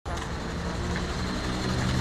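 City bus engine running with a steady low hum, over a haze of street traffic noise.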